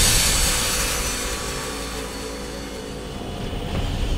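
A loud, noisy roar like an engine or aircraft, coming in abruptly and easing off slowly, with a few faint steady tones underneath.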